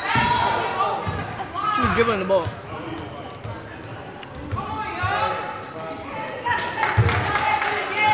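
A basketball bouncing on a hardwood gym floor, with several thumps, over players' and spectators' shouts and chatter in the gymnasium.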